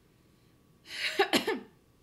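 A person's short cough about a second in, a throaty burst of under a second.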